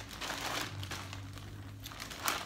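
Thin plastic shopping bag crinkling and rustling as a hand rummages inside it.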